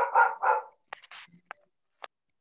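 A dog barking in a quick run of short barks in the first second, followed by a few sharp computer-keyboard key clicks.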